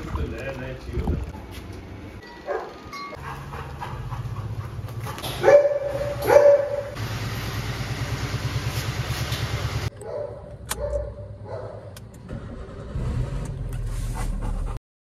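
Golden retriever barking twice, loudly, over a car engine running with a steady pulse; the engine sound stops suddenly about ten seconds in.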